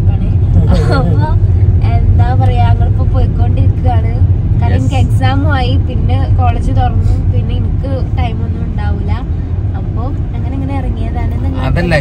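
Steady low rumble of a moving car heard inside the cabin, under lively conversation.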